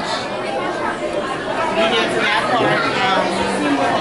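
Background chatter: several people talking at once in a large indoor hall, no single voice clear.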